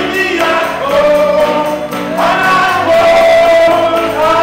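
Gospel choir singing in long held notes that shift to new pitches twice, with a lead voice among them.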